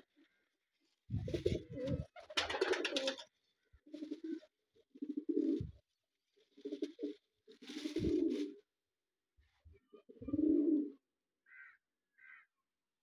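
Pigeons cooing at a nest: about seven separate low coos, each half a second to a second long, with short gaps between them. Two faint, short high squeaks come near the end.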